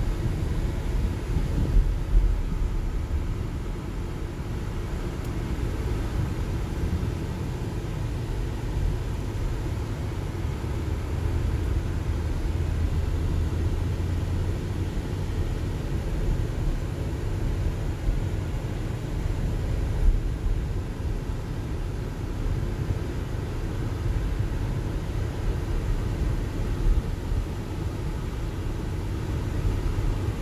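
Inside a car's cabin while it drives slowly: a steady low rumble of engine and tyre noise.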